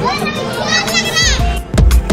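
Young children shouting and squealing over loud music with a steady beat, with one long, high child's squeal about a second in. Heavier beats come in near the end.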